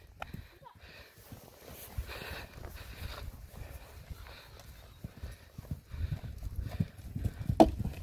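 Canter hoofbeats of an ex-racehorse on a soft arena surface, heard as dull irregular thuds that grow louder over the last few seconds as the horse comes up to a show jump and clears it near the end. The horse put in a short extra stride before the fence.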